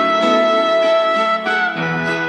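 Slow Indonesian pop ballad music in an instrumental stretch: a long held melody note over a soft chordal accompaniment, moving to a new note about one and a half seconds in.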